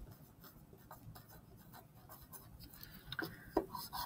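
Wooden pencil writing on paper: faint, short scratching strokes, a few of them louder near the end.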